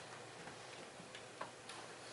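Faint, scattered small clicks and taps over a steady room hiss, the sharpest about one and a half seconds in: people moving about and handling things in a quiet room.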